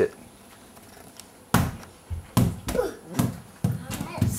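A small ball bouncing on a hardwood floor several times, starting about a second and a half in.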